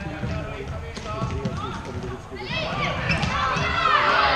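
Floorball game in a sports hall: scattered clicks of sticks and the plastic ball, then high shouts and calls from players from about two and a half seconds in.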